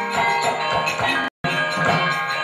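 Javanese gamelan playing the wayang kulit accompaniment: bronze metallophones ringing in overlapping steady tones, with sharp percussive strikes. The sound cuts out completely for a split second just past halfway.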